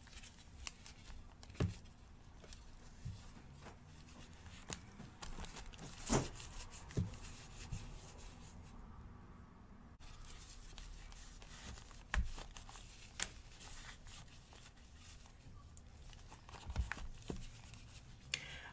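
Faint crinkling of disposable plastic gloves and small scattered clicks as oily hands rub a red candle, with a handful of louder knocks of the candle being handled on a metal tray.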